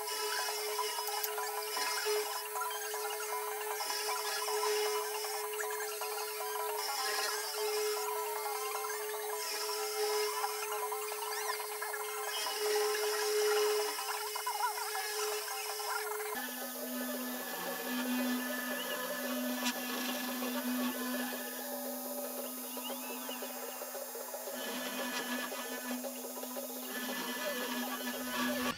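3018 desktop CNC router's spindle motor running with a steady whine while its small end mill cuts into a fibreboard panel. About two-thirds of the way through, the whine changes suddenly to a lower steady pitch.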